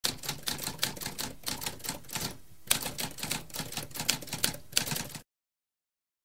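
Typewriter keys typing in a rapid run of sharp keystrokes, with a short pause about halfway; the typing stops abruptly about five seconds in.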